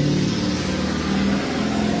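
A motor vehicle engine running with a steady low hum.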